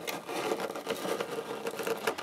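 Cardboard shipping box being opened out and pressed flat by hand: a continuous crackling rustle of flexing, creasing cardboard, made of many small rapid clicks.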